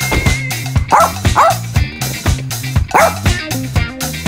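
Upbeat music with a steady beat, with three short dog barks dropped in: two close together about a second in and one about three seconds in.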